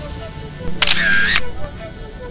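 A phone camera's shutter sound, about half a second long and starting and stopping sharply, a little under a second in, over background music.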